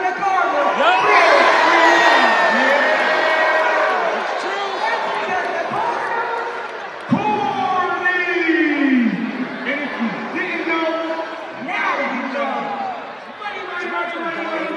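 Voices amplified over an arena's public-address microphones, with crowd noise beneath; a single sharp thud about halfway through.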